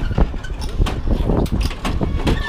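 1979 Soviet 'Moskvich' pedal car's steel body and wheels rattling as it rolls along a road: a steady low rumble with irregular clanks and knocks.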